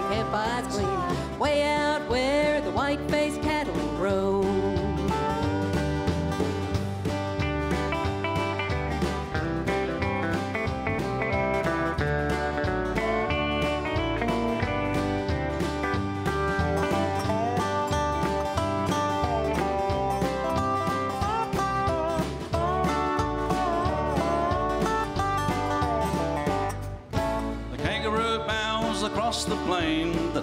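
A live country band playing, with acoustic guitar and a gliding melody line over a steady beat. There is a brief break about 27 seconds in, then the band carries on.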